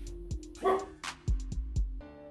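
A dog barking, loudest about two-thirds of a second in, over background instrumental music with a steady beat.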